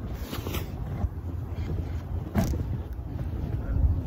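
Wind buffeting a phone's microphone as a steady, uneven low rumble, with a few brief rustles of jacket fabric brushing against it near the start and about two and a half seconds in.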